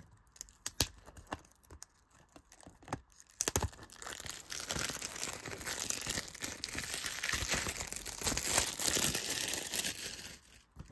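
Plastic shrink-wrap being torn and peeled off a disc case, a continuous crinkling from about three and a half seconds in. Before that come scattered light clicks of the case being handled.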